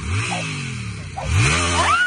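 Sport motorcycle engine revved twice with quick throttle blips, the pitch rising sharply each time and falling away; a child squeals near the end.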